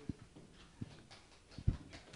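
Three soft, low thumps spaced under a second apart, the last the loudest, over quiet room tone.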